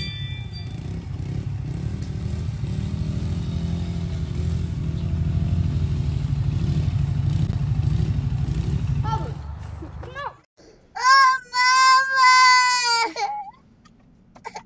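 A steady low rumble for about the first ten seconds, then a toddler crying: one long wailing cry of about two seconds, the loudest sound, followed by a short sob near the end.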